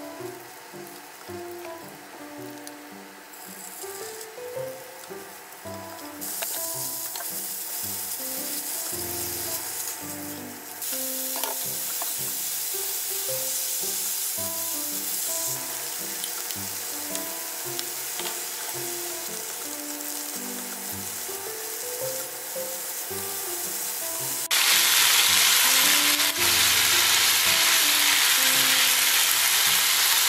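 Pork and leafy greens sizzling as they stir-fry in a frying pan; the sizzle comes in about six seconds in, grows louder around eleven seconds and is loudest for the last few seconds. Soft background music plays underneath.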